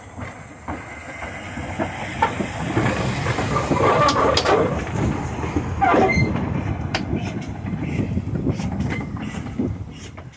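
Double Fairlie narrow-gauge steam locomotive moving slowly past at close range, with hissing steam and the clatter of wheels over the rails, loudest in the middle.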